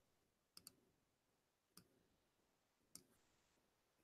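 Near silence broken by a few faint clicks of a computer mouse: a quick pair a little over half a second in, then single clicks near the middle and near the end.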